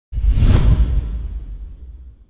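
Whoosh sound effect over a deep bass boom for an animated logo reveal: it starts suddenly, sweeps across the highs about half a second in, and fades away over the next two seconds.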